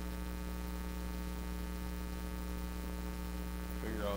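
Steady electrical mains hum with a stack of overtones, unchanging throughout; nothing else is heard.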